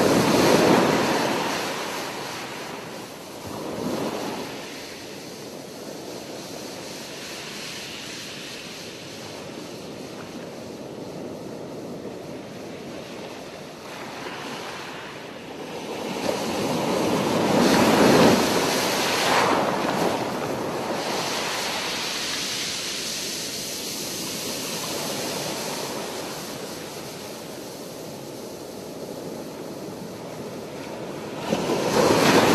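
Ocean surf: waves breaking and washing up a beach in a steady rush, swelling loudest about half a second in and again around eighteen seconds in.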